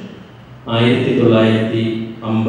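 A man's voice intoning in a steady, chant-like monotone, resuming about two-thirds of a second in after a short pause.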